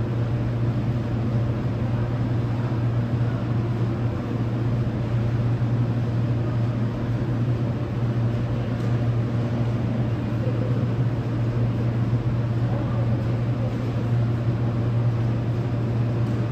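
Steady low hum with an even rumble under it: the background noise of an underground subway station platform.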